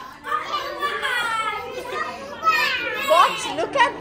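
Small children's high-pitched voices, shouting and squealing excitedly as they play, with several sharp cries in the second half.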